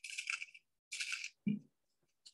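Small steel wire brads rustling and clinking in a clear plastic box as fingers pick through them, in two short bursts about half a second apart, with a brief vocal sound about one and a half seconds in.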